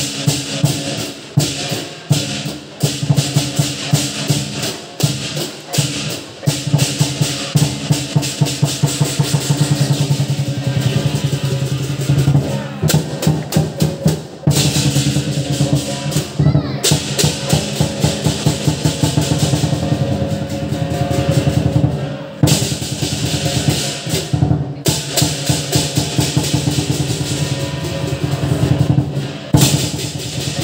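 Chinese lion dance percussion: a drum beaten in fast, dense strokes and rolls, with cymbals clashing over steady ringing tones. It pauses briefly a few times.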